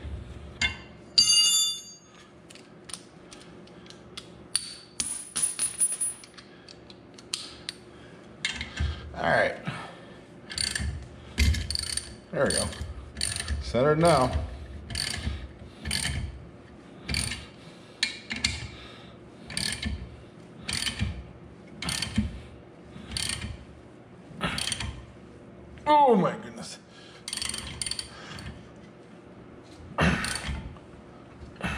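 Ratchet wrench clicking in steady strokes, about once a second, as it turns the forcing screw of a homemade angle-iron hub puller on a car's rear axle hub. A few short rising and falling metal squeaks come from the loaded puller and hub.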